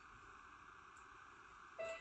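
Near silence: the faint steady hiss of a VHS tape playing through a TV speaker, until music starts suddenly near the end.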